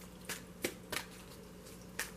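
Oracle card deck being shuffled by hand: three soft, short card snaps in the first second, then a lull.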